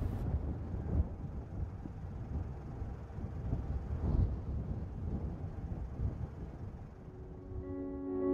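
Uneven low outdoor noise, like wind buffeting the microphone, with music fading in with held tones near the end.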